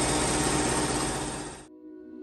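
Steady, loud machine noise with a low hum running underneath, cutting off suddenly near the end.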